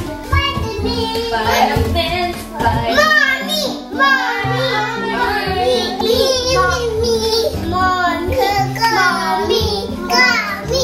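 Background music: a song with a stepping bass line and a high singing voice.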